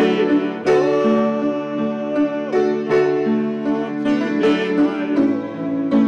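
Hymn accompaniment on piano, accordion and upright bass, with chords held a second or two at a time.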